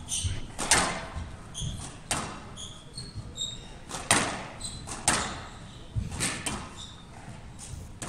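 Squash rally: sharp cracks of the ball struck by rackets and hitting the court walls, irregularly about once a second, with short high squeaks of shoes on the court floor in between.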